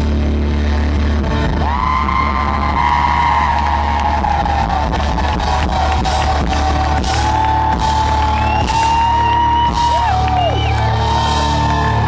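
Live rock band at full volume holding out a sustained closing chord over a low drone, with a long held high note that bends now and then riding on top from about two seconds in.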